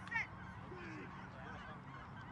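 A flock of geese honking, many short calls overlapping, with one louder honk just after the start.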